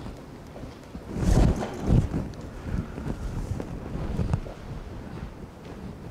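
Low rumble and thuds on a clip-on microphone, like handling noise or breath on the mic. The two strongest come about a second and two seconds in, with smaller ones later.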